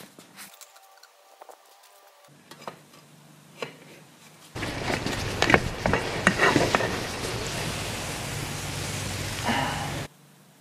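Corn syrup boiling and scorching under a pour of molten aluminum: faint crackling at first, then about four and a half seconds in a loud hissing sizzle full of pops and crackles as steam pours off. The sizzle cuts off suddenly at the end.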